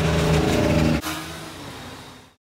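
Engines of heavy military vehicles driving past, the first a tracked armoured vehicle. A loud, steady engine note for about a second, then a quieter engine sound that fades away.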